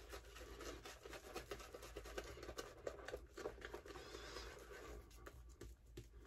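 Faint, soft scratchy swishing of a cashmere-knot shaving brush working shaving-soap lather over the face, in many short strokes.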